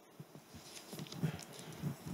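Faint low knocks and rustling, starting about half a second in and growing a little louder toward the end.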